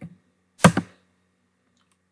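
A single loud, sharp keystroke on a computer keyboard about half a second in, with a lighter click at the very start.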